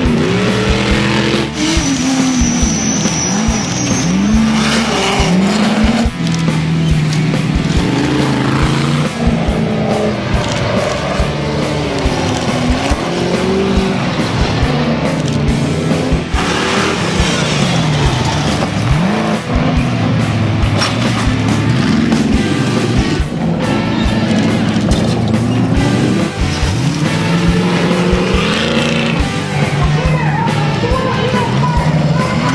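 Ultra4 off-road race car engines revving hard and passing by, their pitch climbing and falling again and again, with background music under them.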